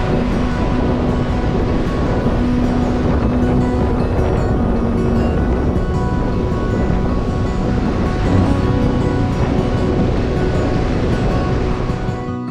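Surf breaking on a sandy shore from a choppy sea, a steady rush of waves, with background music playing over it.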